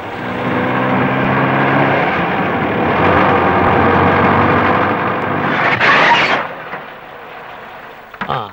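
Hindustan Ambassador car driving up a dirt road: engine hum and tyre noise swelling as it approaches, with a brief louder rush about six seconds in, then fading.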